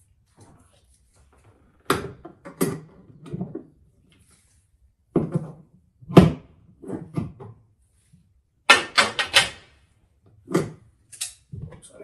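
Grips and fittings on copper gas pipework being handled: a series of sharp clicks and knocks with short pauses between them, and a quick run of four or five clicks about three-quarters of the way through.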